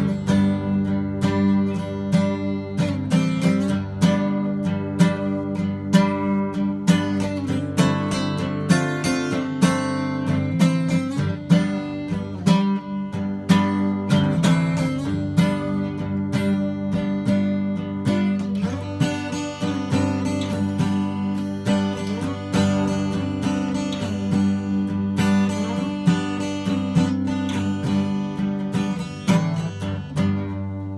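Acoustic guitar in open G tuning, strummed and picked, with low notes left ringing under the chords.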